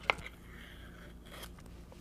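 Blue painter's tape being handled and torn off by hand against a wooden box: one sharp snap right at the start, then faint rustling of the tape.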